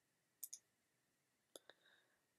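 Faint computer mouse clicks: a quick double click about half a second in, then a single click about a second later with a fainter tick just after, over near silence.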